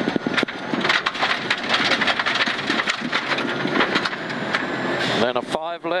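Rally car at speed on an unsealed stage road, heard from inside the cabin: a loud, steady rush of engine, tyre and road noise, peppered with many sharp ticks of stones and gravel striking the car.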